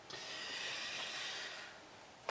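A man breathing out through his nose, a soft hiss lasting about a second and a half that swells and fades.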